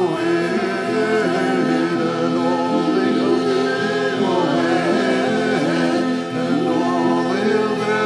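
Several male voices singing together in loose harmony over a steady harmonium drone, with guitar accompaniment.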